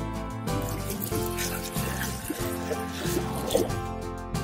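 Background music with water sloshing and splashing as a plastic animal toy is swished through a tub of water.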